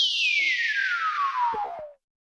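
Electronic downward sweep closing a dance track: a single synthesized tone gliding steadily from very high to low pitch, with a hiss riding above it, then cutting off suddenly near the end.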